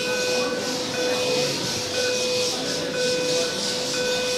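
Electronic start-clock countdown for a track-cycling time trial: a short beep about once a second, over a steady hiss.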